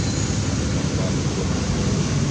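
Steady outdoor wind noise buffeting the microphone, a continuous rushing with a low rumble.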